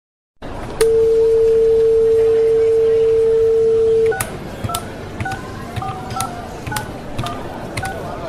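Telephone dial tone held for about three seconds, then a run of touch-tone keypad beeps, about two a second, as a number is dialled, over a steady line hiss.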